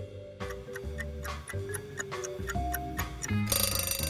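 Countdown-timer sound effect for a quiz question: a clock ticking at about four ticks a second over background music, then an alarm bell ringing about three and a half seconds in as the time runs out.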